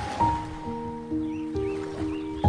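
Solo piano playing a slow, gentle melody, a new note struck about every half second and left to ring, over a soft wash of ocean waves.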